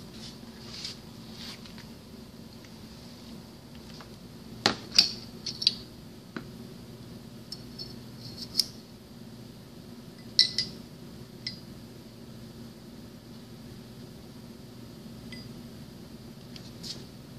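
Metal parts of a single-spring mechanical seal (sleeve, spring and seal rings) clinking and tapping against each other as they are handled and fitted together by hand: scattered sharp clinks with a short ring, the loudest about five and about ten seconds in, over a steady low hum.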